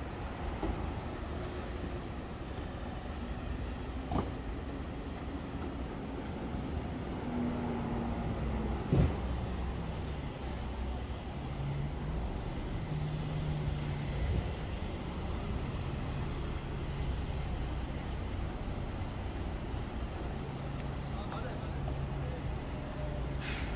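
Street traffic with a nearby car engine running, its hum falling in pitch and then holding steady. A faint click comes about four seconds in and a sharp knock about nine seconds in.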